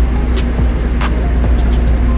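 A steady low rumble and hum under background music, with a couple of light clicks from a metal serving spoon scooping from steam-table pans.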